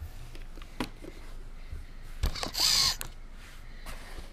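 A small plastic battery connector being handled and plugged into the board. Faint clicks, then a sharp snap a little over two seconds in, followed by a brief hissy rustle.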